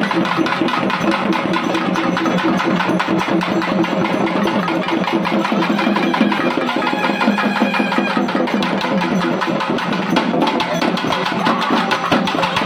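Festival drums, double-headed barrel drums, beaten in a fast, steady rhythm over a held droning tone from a wind instrument.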